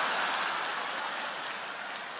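A large theatre audience applauding, the sound fading slowly as it dies down.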